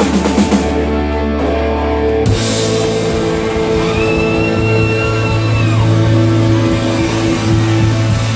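Live rock band playing electric guitars, bass and drums in an instrumental passage of long held chords. The low notes change about two seconds in, and a high note is held for about two seconds near the middle.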